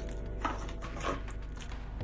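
A few faint knocks and light handling noises as items are moved by hand on a cutting mat, over a low steady hum.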